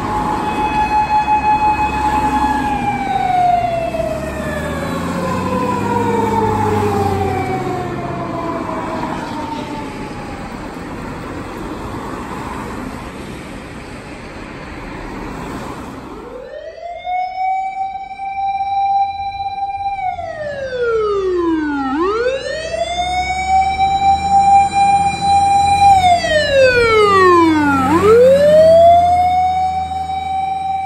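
Fire engine sirens: first a single wailing tone that holds, then slides slowly down over several seconds; after a stretch of traffic noise, a wail that rises quickly, holds for about four seconds and drops, repeating twice and getting louder near the end. Vehicle engine rumble runs underneath.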